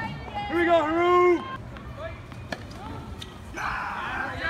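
People's voices around the tennis court, loudest in the first second and a half, followed by a few sharp knocks of a tennis ball.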